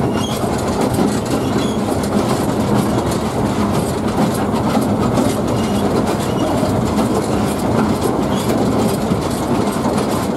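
Coal-fired 2 ft gauge 0-4-2 tank steam locomotive heard from its footplate while running along the line: a steady rumble and rattle of the engine and wheels on the track.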